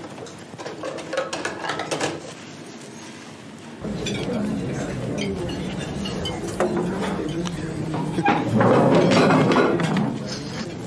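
Indistinct chatter of a roomful of people with clinks of dishes and cutlery. It cuts in sharply about four seconds in and grows louder near the end. Before that there is quieter room sound with a few voices.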